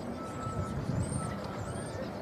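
Outdoor background noise: an uneven low rumble, with faint short high-pitched chirps and a thin steady tone that comes and goes.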